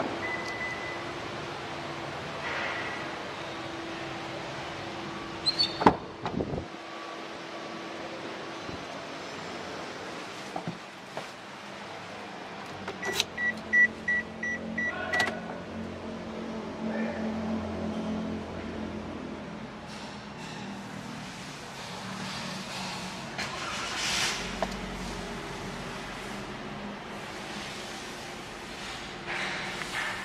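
Car sounds from a Daihatsu Sigra: a sharp knock about six seconds in, like a door shutting; a row of about six short, evenly spaced warning beeps around thirteen seconds in; then the 1.2-litre engine running at idle with a low, steady hum.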